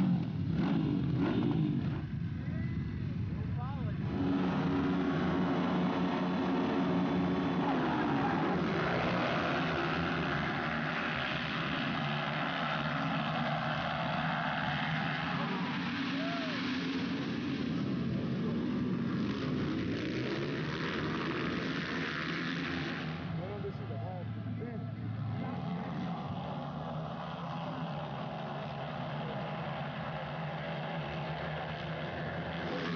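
A pack of 230cc dirt bikes revving on the start line. About four seconds in they accelerate away together, and many engines then run and rev as the bikes race around the track. The sound eases slightly near the end.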